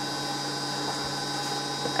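Steady electrical hum with several fixed high whining tones over a hiss, from running vintage radar display electronics.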